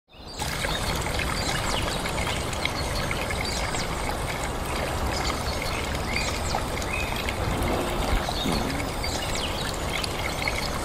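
Small rocky stream pouring and trickling down a short cascade over stones, a steady splashing rush of water.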